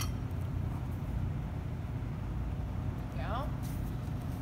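Steady low background rumble with no distinct events, and a brief voice sound about three seconds in.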